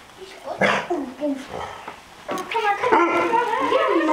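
Eight-week-old Barbet puppies yipping and whining at play, with a sharp noise about half a second in and a run of high, wavering calls in the second half, mixed with children's voices.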